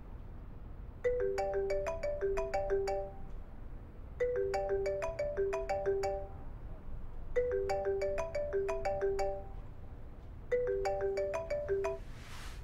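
Mobile phone ringing: a short plinking ringtone melody of rising notes, played four times about three seconds apart.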